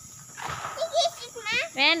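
A handheld sparkler fizzing softly, with a child's voice starting up near the end. A steady high thin whine runs underneath.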